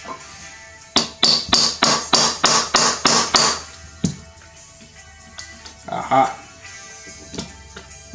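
Claw hammer tapping a trigger pin into an AR-15 lower receiver: about ten quick, sharp taps, roughly four a second, then one more. The pin is binding because it is not lining up with the sear.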